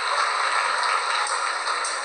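A live band's sound in a hall, picked up from the audience as a loud, steady, noisy wash with little clear melody.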